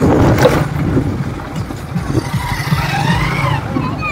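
Motorcycle engine running close by, a steady rough low rumble, with faint distant voices or music over it near the middle.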